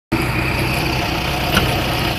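Motor vehicle engine idling with a steady low hum, and a short click about one and a half seconds in.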